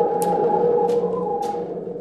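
A corrugated plastic whirly tube being swung, giving a steady, eerie hum of several held overtones as a ghostly scene-change effect.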